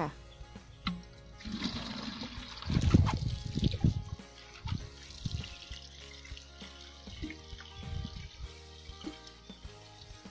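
Water rushing and splashing from a plastic watering can, loudest with a few low knocks about three seconds in, then a softer sprinkle onto soil. Quiet background music plays underneath.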